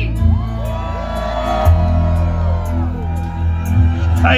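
Live music from a stage PA with a steady low bass line, and many crowd voices rising and falling together over it, singing along and whooping.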